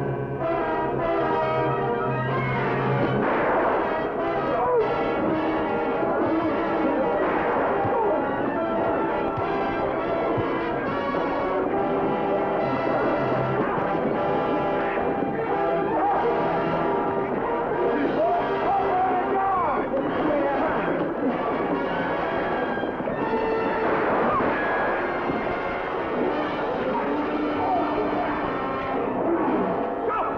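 Orchestral film music led by brass, with long held notes and a held low note over the first few seconds.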